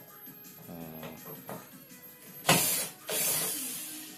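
Cordless drill-driver running in short bursts as it backs out the screws of a TV's rear casing, the loudest burst about two and a half seconds in. Music plays underneath.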